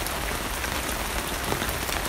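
Steady rain falling on an RV awning overhead, an even hiss.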